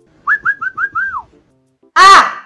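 A quick run of five short whistled notes, the last one sliding down in pitch.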